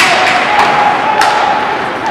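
Sharp knocks of a hockey puck and sticks against the boards and ice: one loud hit at the start and another about a second later, each ringing briefly in the rink.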